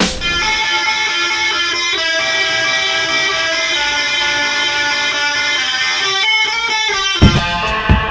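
Guitar break in an electronic track: held electric guitar chords with no drums, the chord changing about every two seconds. Drums come back in sharply about seven seconds in.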